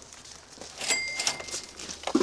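Plastic grocery bags rustling and crinkling as groceries are set down on the ground. About a second in, a sharp clink rings briefly, like a hard item knocking against the ground.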